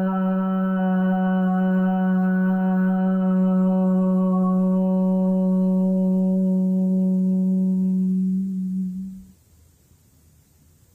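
A woman chanting one long "om", held at a single steady pitch, growing duller near the end and stopping about nine seconds in.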